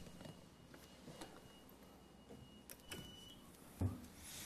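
Quiet room tone in a meeting chamber, with a few faint clicks and a faint high tone. One short, low thump comes near the end.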